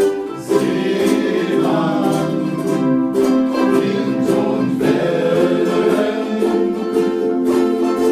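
Group of ukuleles strumming chords together, with a melody carried above them that moves in phrases, breaking off briefly about three seconds in and again near five seconds.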